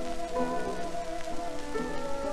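Hawaiian ensemble playing a waltz, heard from an acoustic-era 78 rpm shellac record. Sliding steel-guitar notes sit over the record's steady crackle and hiss of surface noise.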